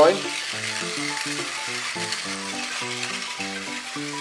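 Battery-powered Tomy toy bullet train running fast on plastic track, its motor and wheels making a steady hissing whir. Background music with a melody of short held notes plays over it.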